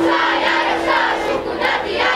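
Children shouting together in unison during a folk kolo dance, their group call over a held fiddle note that fades out about half a second in.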